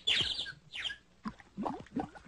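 High-pitched, sped-up cartoon chipmunk chatter: squeaky chirps that slide down in pitch, then after a short pause a quick run of short rising and falling syllables.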